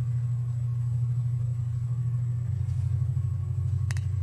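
Loud, steady low rumble that turns into a fast flutter about halfway through, with a single sharp click near the end.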